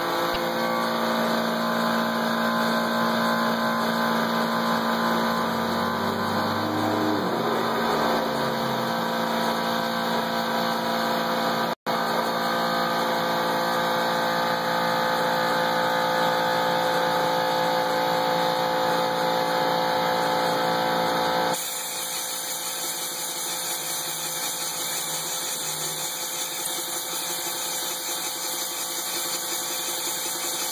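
Powder-coating equipment running: a steady motor hum with air hiss. A little past two-thirds of the way through, the hum drops and the hiss turns brighter, with a brief cut-out just before the middle.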